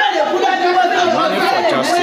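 Several women talking loudly over one another in an echoing room, heated and continuous.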